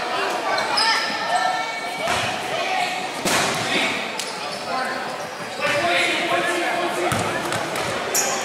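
A basketball bouncing a few times on a hardwood gym floor, each thud echoing in the hall, over steady chatter from spectators and players.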